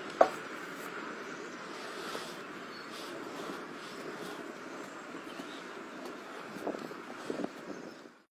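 A shod draught horse walking out of shoeing stocks. There is a single sharp knock about a quarter second in, then a few soft hoof thuds near the end, over a steady background noise.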